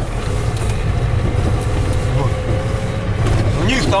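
Steady low drone of a vehicle running, with a faint steady whine through the middle.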